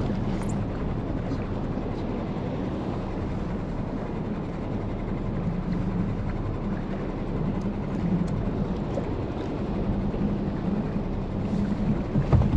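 Steady wind and water noise around a small skiff drifting on a choppy sea, with a low, even hum underneath.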